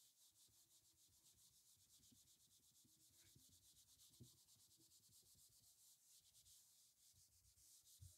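Near silence, with only very faint rubbing of a whiteboard eraser wiping marker off the board.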